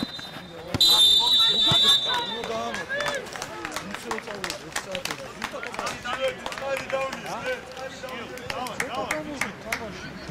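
A referee's whistle, one steady high blast about a second long starting about a second in, the loudest sound here. Players and spectators call out around it, with scattered short knocks of ball and feet.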